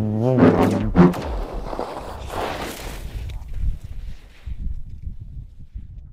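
A man laughing briefly over a low droning tone, followed by a rushing noise that fades over the next few seconds.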